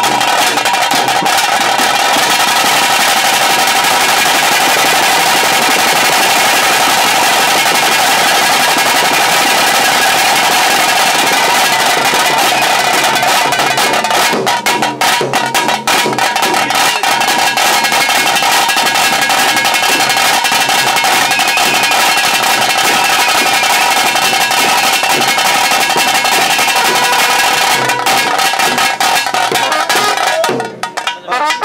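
Tiger-dance band drums (tase), beaten with sticks in a fast, unbroken rhythm, with a few brief breaks in the beat about halfway through.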